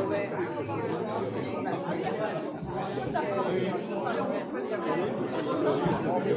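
Crowd chatter: many people talking at once, a steady babble of overlapping voices in a large hard-floored hall.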